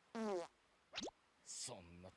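Cartoon fart sound effect from the anime soundtrack: a short pitched blat with falling pitch, then a quick rising glide, with a man's voice line beginning near the end.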